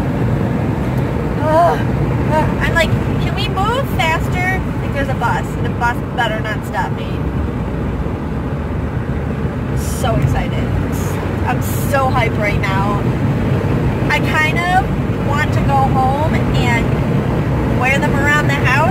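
Steady road and engine rumble heard inside the cabin of a moving car, with a voice coming and going over it.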